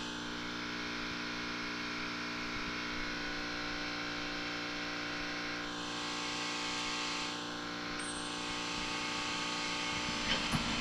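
A steady hum made of several fixed pitches that hold unchanged throughout, like a machine running in the shop, with no knocks or tool strikes.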